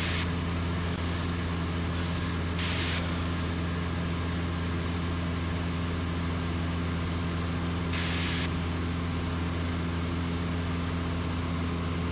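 Super Decathlon's piston engine and propeller droning steadily in cruise, heard from inside the cockpit with an even hiss of air noise. Three short bursts of hiss break in, near the start, about three seconds in and about eight seconds in.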